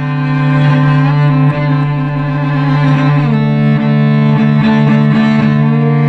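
Solo cello bowed in sustained double stops: a low note held steady throughout under a second, higher note that steps down about three seconds in. The instrument is a carbon-fibre cello.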